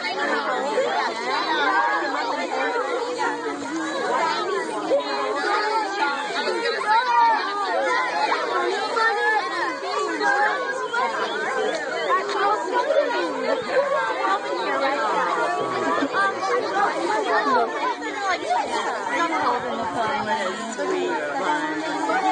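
Several people talking at once: steady, overlapping chatter of adults' and children's voices, with no single voice standing out.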